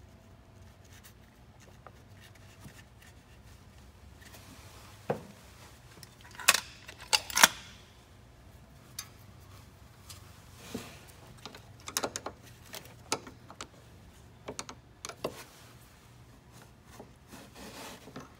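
Scattered metallic clicks and knocks as A/C refrigerant lines and their fittings are worked by hand onto a truck's expansion valve block, with the loudest cluster about six to seven seconds in, over a low steady hum.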